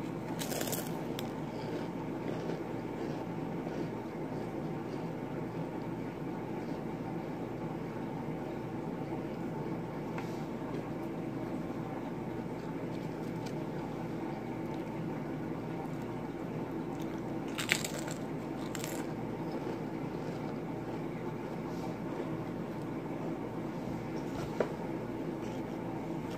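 Pringles potato crisps being bitten and chewed, with a few short, sharp crunches spread through a steady background hum.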